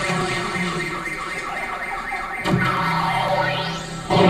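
Sound-effect passage in a dance routine's playback soundtrack: sustained alarm-like electronic tones, a new layer coming in about halfway, and a rising sweep near the end.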